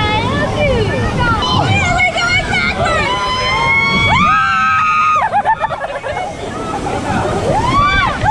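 Riders on a river-rapids raft screaming and shrieking without words, with long held cries about halfway through, over the steady rush and slosh of the water.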